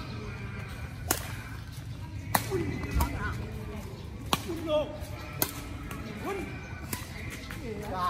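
Badminton rackets hitting a shuttlecock back and forth in a rally: about six sharp pops spaced a second or so apart, with short voice exclamations between the hits over a steady low street hum.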